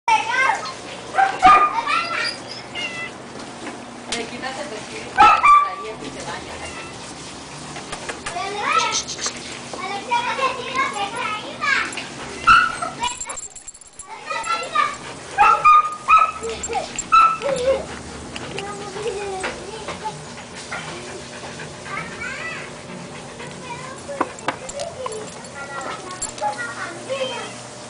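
Siberian husky puppies about five weeks old whining and yipping in many short, high, overlapping calls, with the loudest yelps about a second and a half and five seconds in.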